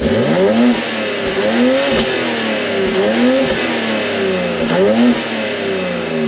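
2022 BMW X4 M Competition's 3.0-litre twin-turbo inline-six, heard at its quad exhaust tips, revved repeatedly while standing still. The pitch rises and falls in quick blips about once a second.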